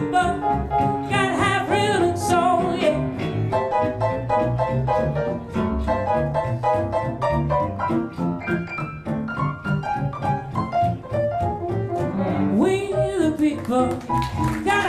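A live jazz combo: a female vocalist singing over upright double bass, piano and archtop guitar. The voice drops out in the middle while the instruments play on, then comes back near the end.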